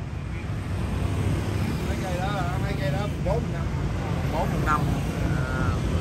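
Steady low rumble of street traffic, with faint voices talking in the background around the middle.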